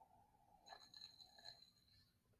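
Near silence, with a faint sip of beer from a glass; a thin high tone runs through it for about a second from midway.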